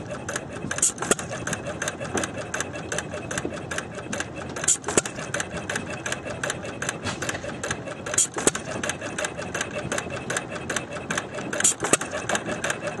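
Small antique two-flywheel stationary gas engine running: a quick, even clatter of about six ticks a second, with a louder crack about every three and a half seconds. This is the pattern of a hit-and-miss engine firing only now and then.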